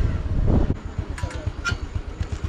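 Moving motor scooter on a rough dirt track: wind buffeting the microphone over an uneven low road rumble.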